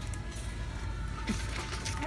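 Background noise of a busy pharmacy, a steady low din with faint music playing, and a brief distant voice about a second and a half in.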